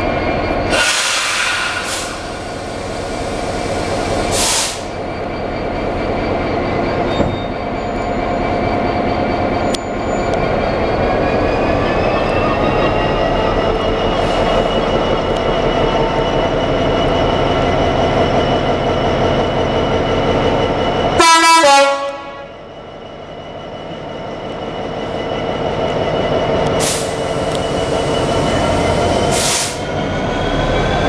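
GB Railfreight Class 66 diesel-electric locomotive's EMD two-stroke V12 engine running and slowly rising in pitch as it starts away with a heavy freight train. Its horn sounds briefly a little over two thirds of the way through, and short hissing bursts break in a few times.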